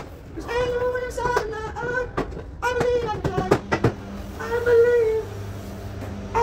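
A high-pitched voice repeating a short sing-song phrase several times, broken by sharp clicks. A steady low hum starts about four seconds in.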